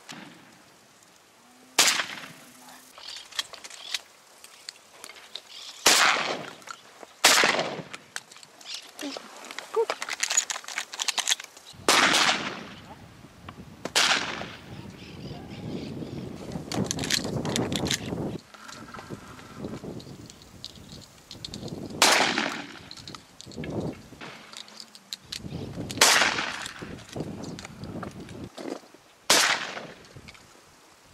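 Shotgun shots at flying doves: about eight sharp reports spread irregularly, none in a fast string. A stretch of rough, steady noise runs through the middle.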